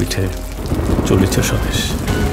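Heavy rain pouring down, with a rumble of thunder that swells around the middle.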